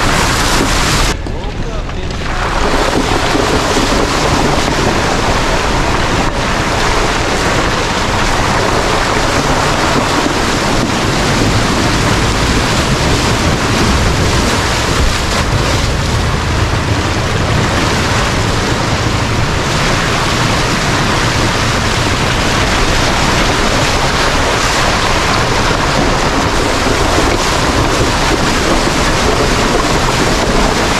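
Steady rushing noise of wind and road on an outside-mounted camera microphone as an off-road vehicle drives a wet dirt trail, with water sloshing and splashing later on as it fords a muddy creek. The hiss briefly drops away about a second in.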